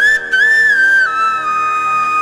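Devotional music between chanted lines: a flute plays an ornamented melody, then settles on a long held note about a second in, over a steady drone.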